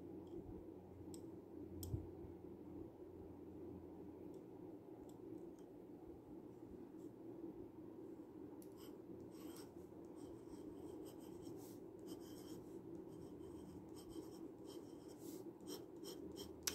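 Faint scratching of an Asxma glass dip pen's glass nib writing on paper, with a light knock about two seconds in.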